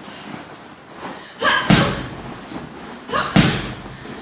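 Boxing-glove punches landing on a fighter: three hard smacks, two close together about a second and a half in and a third a little past three seconds.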